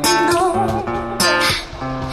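Acoustic guitar strummed in chords, with a woman's voice singing a wavering held note over it in the first second or so.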